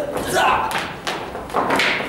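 Several sharp thuds and knocks of blows landing in a staged stick-and-hand fight, with short bursts of voice from the fighters between them.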